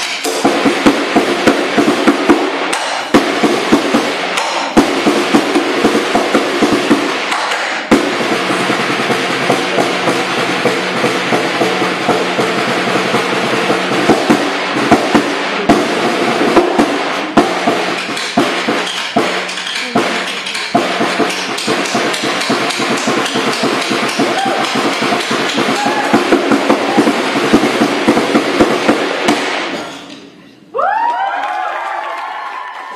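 Two snare drums played with sticks in a fast improvised duet: dense, continuous strokes and rolls with frequent sharp accents and snare rattle.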